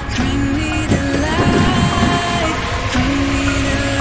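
Background music with held tones. Between about one and two and a half seconds in, it is joined by a cluster of heavy knocks and rumbling as pine logs tip and roll off a trailer onto the ground.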